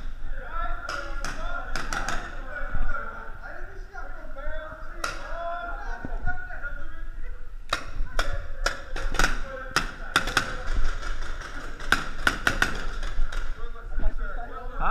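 Indistinct talk from players, with scattered sharp taps and knocks, thickest in quick clusters past the middle.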